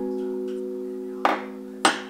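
A held chord of soft background music, with two sharp clacks of tableware set down on a table, a little past a second in and near the end: a ceramic soup bowl and a metal spoon, the second clack the louder.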